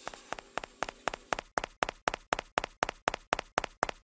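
Sound effect of an animated outro: a rapid, even series of sharp taps, about five a second, growing louder.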